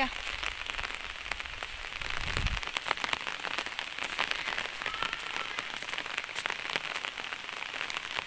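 Steady rain pattering, a dense hiss of many fine drop ticks. A low rumble underlies the first two and a half seconds.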